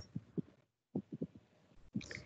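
A few faint, short, low thumps at irregular spacing, separated by brief stretches of dead silence.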